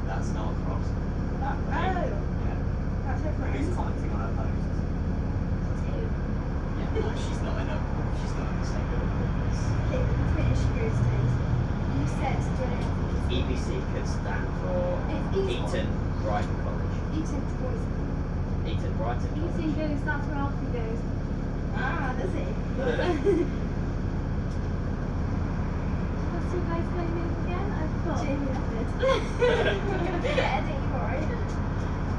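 VDL DB300 double-decker bus's diesel engine idling with a steady low hum while the bus stands in traffic, swelling slightly about a third of the way in, with faint voices of passengers.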